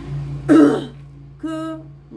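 A woman clearing her throat once, a short harsh rasp about half a second in, followed by a brief hum of her voice.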